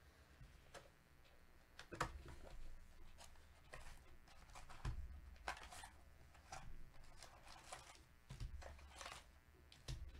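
Faint handling of a cardboard trading-card hobby box being opened and its foil-wrapped card packs pulled out and set down: scattered soft taps and knocks with brief rustles. The sharpest tap comes about two seconds in.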